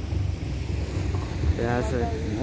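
Low, steady rumble of a car's engine and road noise from inside a moving car on a wet dirt road, with wind buffeting the microphone. A short spoken word comes near the end.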